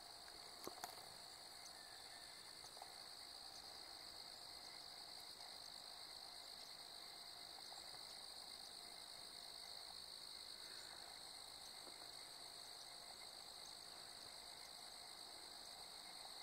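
Faint, steady chorus of insects: a continuous high-pitched buzz with a fainter, higher band above it, over an otherwise near-silent background. A couple of small clicks just under a second in.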